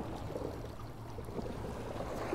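Faint, steady outdoor ambience at the shoreline: a low rumble with a low hum, with no distinct events.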